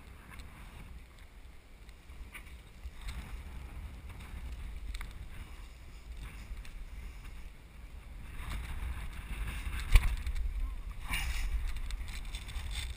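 Low rumble of wind on a body-mounted action camera's microphone during a sailboat mast climb, with scattered knocks and rubbing of hands and gear against the mast and sail cover. A single sharp knock near the end is the loudest sound.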